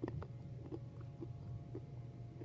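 Close-up chewing right at the microphone: soft crunching clicks, a few a second, over a steady low hum.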